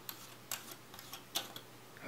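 Faint, irregular light clicks and taps from a camera lens being handled with gloved hands just after its front name ring has been unscrewed. There are about five ticks over two seconds, the clearest a little past the middle.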